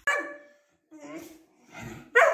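Weimaraner puppy vocalizing: a sudden sharp call right at the start that fades within half a second, then a quieter, lower call about a second in.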